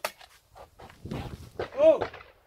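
A shooter's single short shout of "Oh!" near the end, the call for the clay target to be released, rising then falling in pitch. A sharp click comes just before it, at the start.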